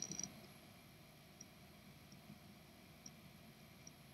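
Near silence: faint room tone, with a brief cluster of faint clicks at the very start.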